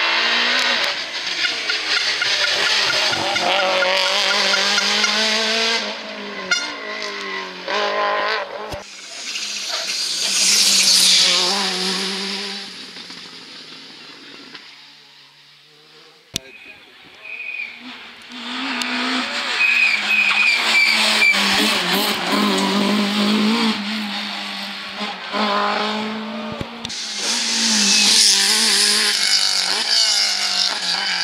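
Two rally cars at full speed on a tarmac stage, one after the other. Each engine revs hard and its pitch climbs and drops through the gears; the sound swells loudest as each car passes close, with a quieter gap in the middle between the two cars.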